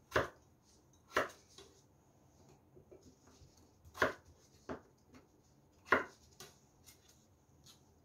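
Chef's knife cutting a potato into cubes, the blade knocking sharply on a wooden cutting board. The knocks come singly and irregularly, a second or more apart.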